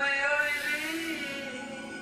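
A recorded song playing, with a man singing long, held notes over the music.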